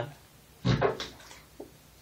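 A toddler breaking wind in bathwater: one short bubbly burst about two-thirds of a second in, followed by a couple of faint small sounds.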